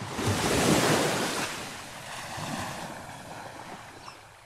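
Rushing water splash sound effect: it surges up sharply, is loudest about a second in, then slowly fades away.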